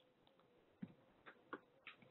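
Near silence: faint room tone with a low steady hum and a handful of soft, irregular clicks.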